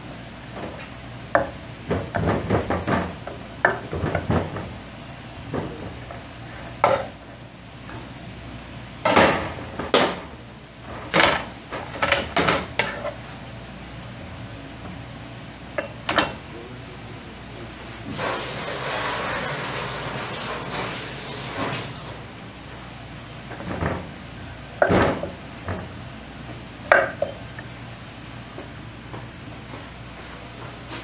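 Food-prep clatter on a wooden cutting board: a kitchen knife and hands knocking on the board, and bowls and plastic containers being handled, in scattered sharp knocks and clicks. A steady hiss lasts about four seconds in the middle.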